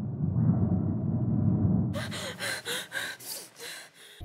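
A low, dark rumbling drone, then about halfway through a woman gasping for breath: about six quick, sharp gasps in two seconds.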